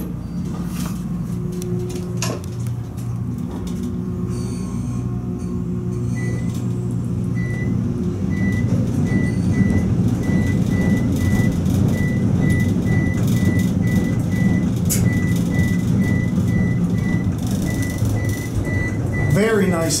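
Otis high-rise elevator car descending: a steady low hum and rumble from the moving car that grows louder after the first several seconds, with a click about two seconds in. Short high beeps repeat about once a second through the middle and latter part of the ride.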